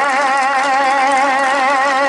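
A man's voice holding one long sung note with a steady wavering vibrato, as in the sung (tarannum) recitation of an Urdu nazm.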